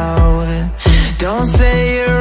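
Music: a song with a sung vocal line over a steady drum beat, about one kick every 0.7 seconds.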